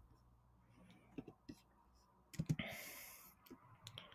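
Faint computer mouse clicks while scrolling a web page: a couple of sharp clicks about a second in and a few more near the end, with a short breathy hiss in the middle.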